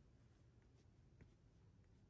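Near silence, with faint strokes of a felt-tip marker colouring in boxes on a sheet.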